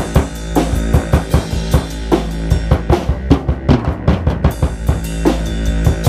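Improvised jazz-style jam: a drum kit plays a busy, uneven pattern of kick and snare hits over held low bass notes that change about halfway through.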